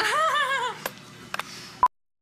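A high, wavering vocal note lasting under a second from a woman brushing her teeth, then a few faint clicks and a short beep as the recording cuts out into silence.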